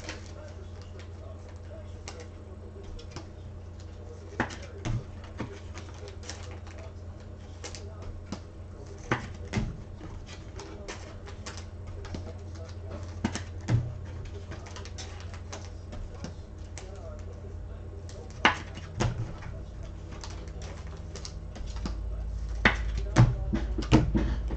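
Scattered light clicks and knocks, a few seconds apart, over a steady low hum; a low rumble comes in near the end.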